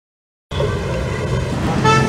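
Street traffic noise that starts abruptly about half a second in, with a vehicle horn tooting briefly near the end.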